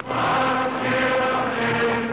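Trailer music of chanting voices holding long notes, coming in suddenly and shifting pitch about once a second.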